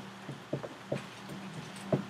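Dry-erase marker on a whiteboard: a few soft, short taps and strokes over a steady low room hum.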